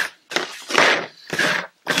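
A hard plastic Raspberry Pi case and its cables being handled and slid across a tabletop: four or five short scraping, rustling bursts.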